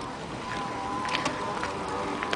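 Electric mobility scooter driving along: a steady thin motor whine over a low rumble.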